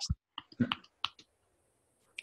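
Fists tapping on the middle of the chest over the breastbone: a quick run of about half a dozen soft, short taps in the first second or so.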